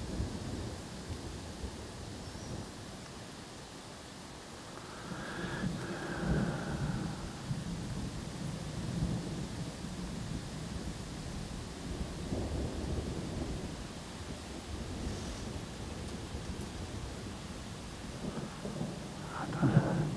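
Storm wind gusting, with a low rumble that swells about five seconds in and again around twelve seconds.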